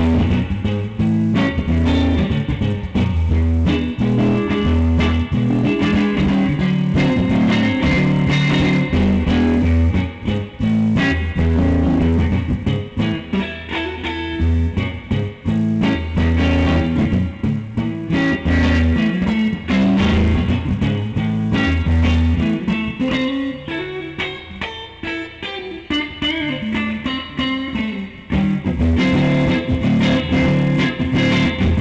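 Fender Stratocaster electric guitar played through an amplifier: a riff of repeated low notes mixed with strummed chords, a little quieter for a few seconds past the middle.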